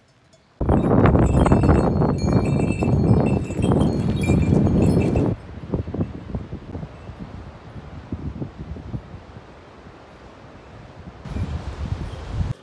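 Bells on pack horses jingling, loud for the first few seconds, then quieter, with hooves clattering on loose stones.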